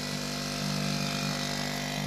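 Suzuki JR50 mini dirt bike's small two-stroke single-cylinder engine running steadily while it is ridden.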